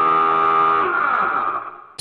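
A man humming one long, steady 'mmm' with closed lips, holding the same pitch and fading out just before the end.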